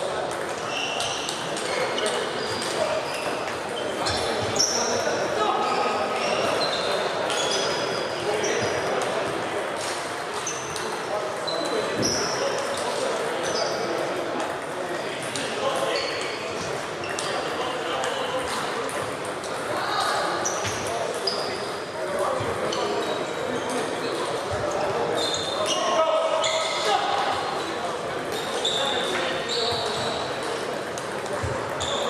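Table tennis ball hits, many quick sharp clicks and short high pings of the ball on table and bats, in a large echoing hall over a steady murmur of voices.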